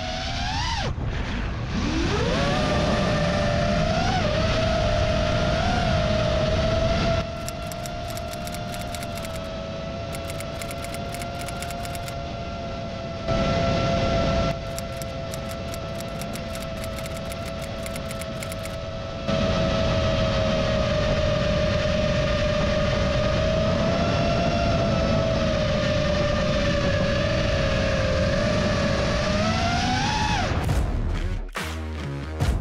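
FPV freestyle quadcopter's brushless motors and propellers whining, pitch climbing as throttle comes up near the start and then holding fairly steady with small wavers, with wind rushing over the onboard camera's microphone. The sound gets quieter for two stretches in the middle.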